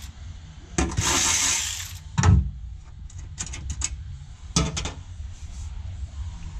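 Metal hand-tool work in a car's trunk: a scraping rustle about a second in, a loud knock a little after two seconds, a quick run of sharp clicks, then another knock near the end.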